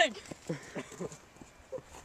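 A few short, quiet giggles from a young person's voice, trailing off after a loud laugh.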